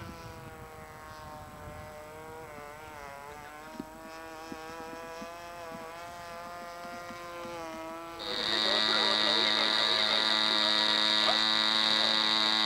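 Small model aircraft engine buzzing in flight, its pitch wavering as the plane manoeuvres. About eight seconds in, a sudden much louder, steadier buzz with a high whine takes over.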